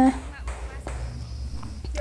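A woman's voice trailing off at the very start, then quiet room noise: a steady low hum with a few faint clicks.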